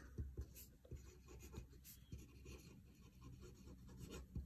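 Pen writing on paper: faint, irregular scratching strokes.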